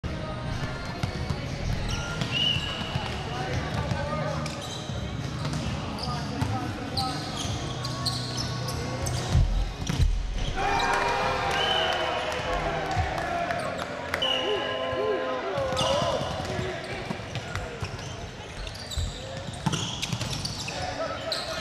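Indoor volleyball play on a hardwood gym court: players shouting calls, sneakers squeaking on the floor, and the ball being struck, with the loudest thuds about nine and a half to ten seconds in.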